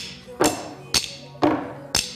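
Drumsticks struck in a steady rhythm, about two sharp hits a second, over background music with a beat.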